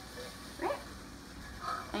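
A woman saying two short words, one about half a second in and one near the end, over a faint steady hiss.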